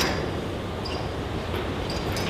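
Steady low rumble of a docked ferry's car deck, with a sharp click right at the start and a few faint metallic clinks near the end.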